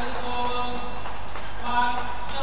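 Voices calling out in long held shouts in a badminton hall, over the quick steps and shuttlecock hits of a men's singles rally as it ends.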